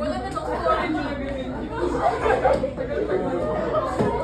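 Group chatter: many students talking over one another in a classroom, with no single voice standing out.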